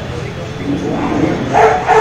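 A dog barking twice in quick succession over a murmur of men's voices.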